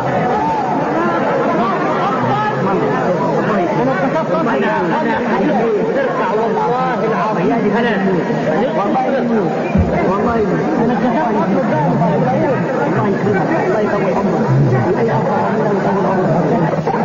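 Crowd of listeners' voices talking over one another: a steady, dense babble of many people.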